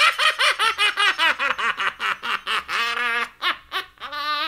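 A long, theatrical villain's laugh from the devil character, gloating over two souls won: a quick run of "ha-ha" pulses, several a second, with a held note about three seconds in, stopping just before the end.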